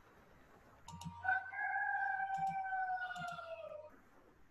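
A rooster crowing once, starting about a second in: one long call that holds its pitch and falls away near the end.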